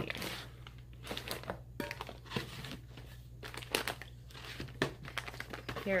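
Wrapped gift packages crinkling and rustling as they are rummaged through by hand, in irregular crackles throughout, over a low steady hum.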